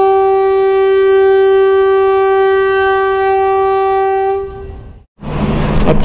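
Train horn held on one steady note for about four and a half seconds, then fading out. After a short break, railway platform noise with voices comes in near the end.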